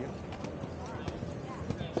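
Ski boots clacking on brick paving in a string of short hard steps, with crowd chatter behind.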